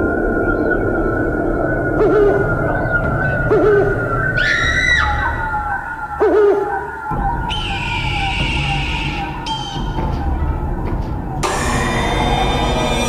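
Eerie electronic sound-effect score with no speech: a long run of short falling tones that step slowly lower in pitch, a rising wailing glide about five seconds in, and a hiss about eight seconds in. Music swells in just before the end.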